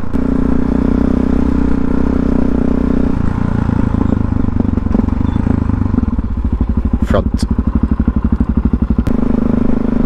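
Supermoto motorcycle engine heard while riding: a steady note for about three seconds, then dropping to low revs with a slow, evenly pulsing chug, and the higher note returning near the end. Two brief high squeaks come about seven seconds in.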